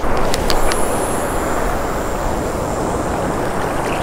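Steady rush of Gulf surf washing around a wading angler, with wind on the microphone; a few light clicks in the first second.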